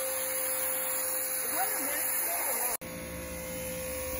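Ryobi electric pressure washer running, a steady electric hum from its motor and pump with the hiss of the water jet. The sound breaks off for an instant about three seconds in and carries straight on.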